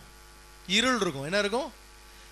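Steady electrical mains hum in the pauses of a man's preaching, with one short spoken phrase about the middle.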